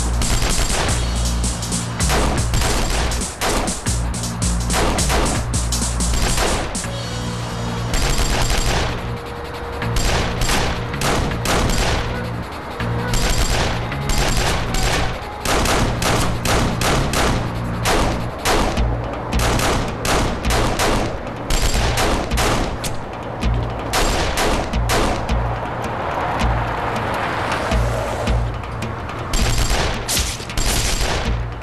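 Gunfight: shots fired from pistols and other firearms throughout, often several in quick succession, over background music with steady low tones.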